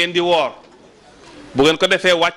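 A man's voice through a microphone and PA, in long, drawn-out melodic phrases, with a pause of about a second in the middle.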